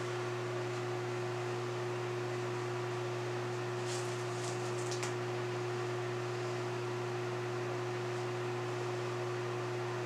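A steady low hum with one clear, unwavering tone above it, even in level throughout, with a few faint high ticks about four to five seconds in.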